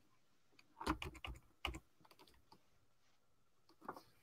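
A few faint clicks at a computer: a small cluster about a second in, one more shortly after, and a single click near the end, as a page is worked through on screen.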